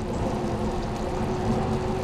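Bicycle riding on a rain-wet road: steady tyre hiss and wind rumble on the mounted camera, with a faint steady droning tone from a machine in the background.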